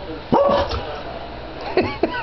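A boxer dog gives one loud bark about a third of a second in, then whines and yips with rising and falling pitch near the end, begging for food.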